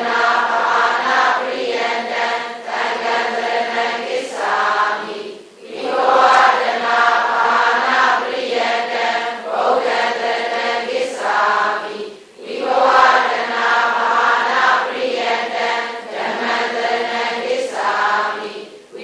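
Voices chanting a Buddhist devotional recitation in unison on a steady pitch, in long held phrases with brief pauses for breath twice.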